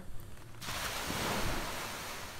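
Small waves washing onto the shore, an even hiss of surf that starts suddenly about half a second in.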